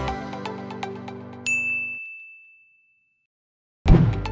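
A single bright chime ding about a second and a half in, ringing on for nearly two seconds over the tail of background music that fades away; silence follows, and music comes back in just before the end.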